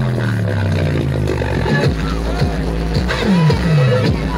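Loud Timli dance music played over a sound system, with deep bass notes, several of them sliding downward in pitch.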